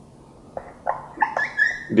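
Felt-tip whiteboard marker squeaking and scraping on the board as letters are written: about six short, squeaky strokes in quick succession from about half a second in.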